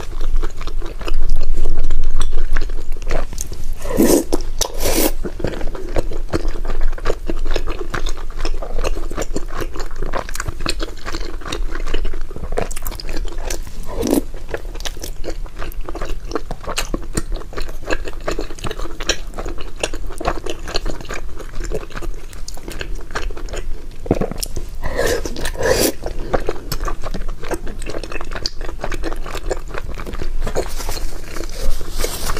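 Close-miked chewing of sticky brown-sugar glutinous rice cake (ciba), with continuous wet mouth clicks and smacks. There are louder bites about four seconds in and again near the end.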